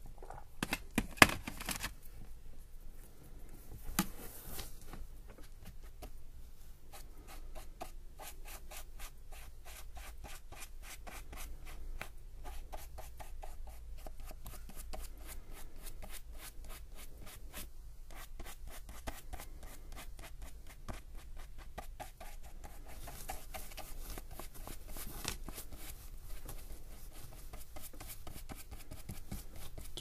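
Paintbrush loaded with black watercolour paint brushed and dabbed onto sketchbook paper: a long run of quick, short, scratchy bristle strokes on the paper, several a second. A sharp knock sounds about a second in.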